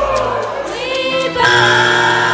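Three young women singing together in harmony, holding long notes, stepping up to a louder, higher held chord about one and a half seconds in.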